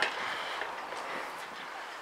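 Outdoor background noise in a garden: a faint, steady hiss with no distinct events.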